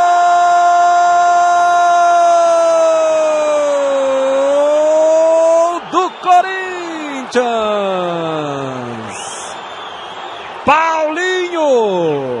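A Brazilian football commentator's drawn-out goal shout, "Goool!", held loud on one note for almost six seconds, sagging briefly and rising again before breaking off. It is followed by several shorter shouted calls that fall in pitch.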